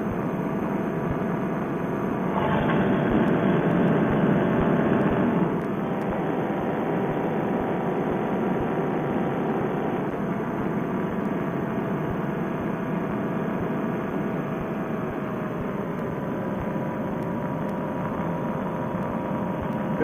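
Paramotor's two-stroke engine and propeller running steadily in flight, with a few steady tones in the drone. It grows a little louder for about three seconds starting two seconds in, then settles. The sound is narrow and muffled, as if picked up by a Bluetooth headset microphone.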